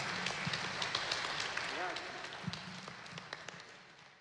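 Audience applauding, a dense patter of claps with a few voices calling out; it fades out over the last second or so.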